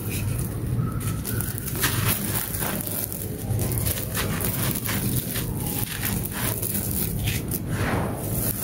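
Hands crumbling a packed block of gritty red dirt, with many short crunches and crackles as clumps and small stones break apart and fall onto loose dirt, denser from about two seconds in. A steady low rumble runs underneath.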